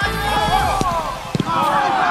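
Players shouting and calling to each other over a football match, with two sharp ball kicks about a second in; the tail of a dance-music soundtrack is still faintly underneath.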